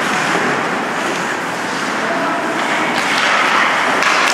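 Steady hiss of an ice hockey rink during play, skates scraping and carving the ice.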